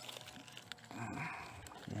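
Dry coconut palm frond mulch rustling and crackling as a hand pushes through it, with a brief low murmur about a second in.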